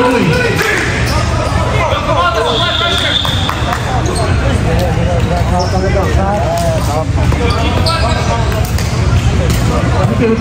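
A volleyball thumping during play on a hard indoor court amid loud voices and crowd chatter, with a brief high steady tone about three seconds in.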